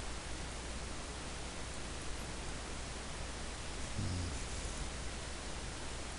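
Steady hiss with a low electrical hum underneath: the recording's background noise. A brief low sound about four seconds in.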